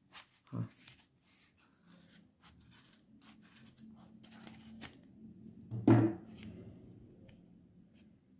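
Sharp scissors snipping through a thick bundle of yarn wound around a plastic DVD case, a quick run of short cuts through the first five seconds. The yarn is hard to cut because it is wound many times.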